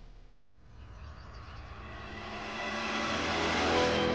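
A rising whoosh, a soundtrack riser with faint held tones inside it, swells steadily louder for about three seconds and peaks near the end. It is the build-up into a scene change.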